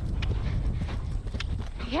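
Hoofbeats of a horse cantering across the ground, heard from the saddle, with a short word from the rider at the very end.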